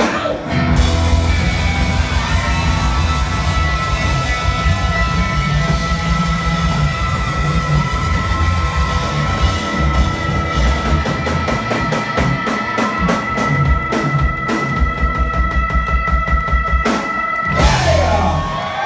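Live rock band playing an instrumental passage: pounding drum kit and electric guitars, with a high note held steadily from about a second in until near the end, where the music breaks off.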